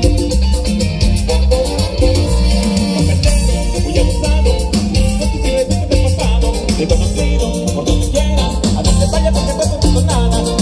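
A live Latin dance band playing loudly through a PA system, with heavy bass and a steady dance beat.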